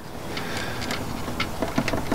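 Small clicks and scrapes of multimeter test probes being moved between the pins of a wiring connector, over a steady background hiss.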